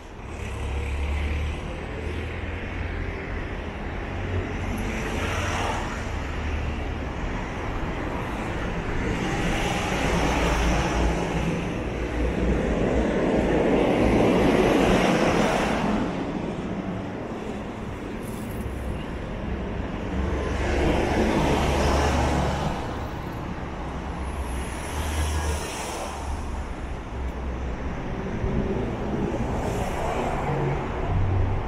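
Road traffic on a city street: cars passing on the road alongside, rising and fading in several swells, the loudest about halfway through.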